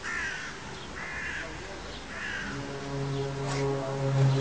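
A crow cawing three times, about a second apart. From about halfway through, a low steady drone with overtones fades in and grows louder: the unexplained "strange sound" heard over the city.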